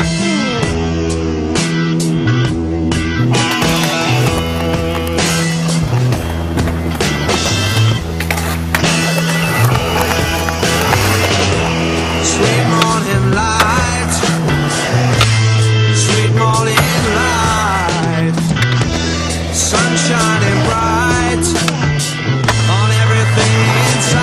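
Rock music with electric guitar and bass, mixed with the sounds of skateboarding: wheels rolling on concrete and repeated clacks of board pops and landings.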